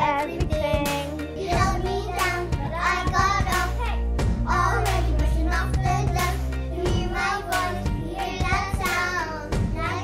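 Young girls singing a song over a backing track with a steady beat and bass line.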